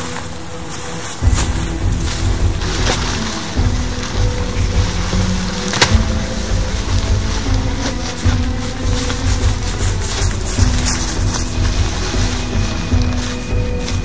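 Background music: sustained notes over a steady bass beat that comes in about a second in.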